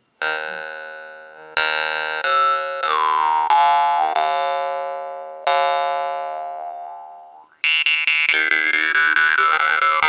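Stainless-steel jaw harp (vargan) tuned to D, droning on one fixed pitch. It starts with single plucks, each left to ring and fade, while the bright overtone slides down and up as the mouth changes shape. From about eight seconds in it is plucked fast and steadily, with a shifting overtone melody.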